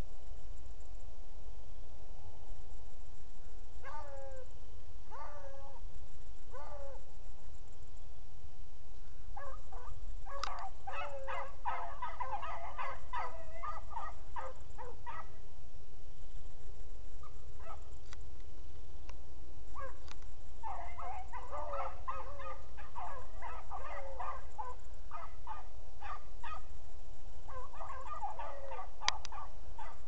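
A pack of beagles baying as they run a rabbit's track. A few single calls come first, then the pack gives voice together in long stretches of overlapping baying, starting about ten seconds in and again from about twenty seconds on, over a steady low rumble.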